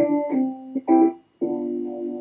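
Software electric piano, on an 'Authentic Phaser' preset, playing chords, likely starting on a C major chord (C–E–G). A few short chords are followed by a brief break about a second and a half in, then a held chord.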